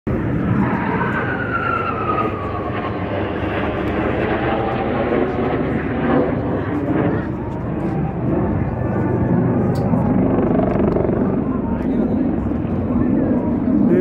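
Jet aircraft flying overhead: a steady engine noise throughout, with a high whine that falls in pitch over the first few seconds as a jet passes.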